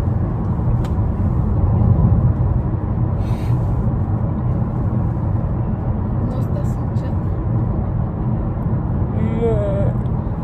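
Steady low road rumble inside the cabin of a moving car. A person's voice comes in briefly near the end.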